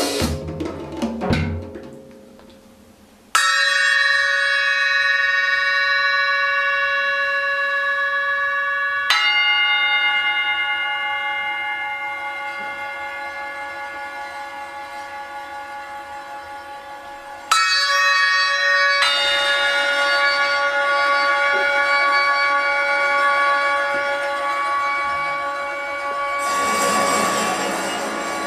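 Live improvised music. A few drum strikes fade out, then a sustained, bell-like ringing tone rich in overtones starts abruptly. New ringing tones enter suddenly twice more, near the middle and about two-thirds through, each holding and slowly fading.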